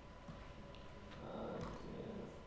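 Faint laptop keyboard clicks as a few characters are typed, over a low steady room hum.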